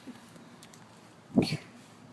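A dog gives one short bark about one and a half seconds in.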